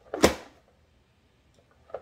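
A press-down vegetable dicer (Vidalia Chop Wizard) pushed shut once on tomato pieces: a single sharp plastic clack as the lid drives the tomato through the blade grid, about a quarter second in, then near quiet with a faint click near the end.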